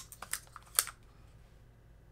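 Fingernails picking a sticker label off a plastic lotion or shower-gel bottle: a few short scratchy clicks in the first second.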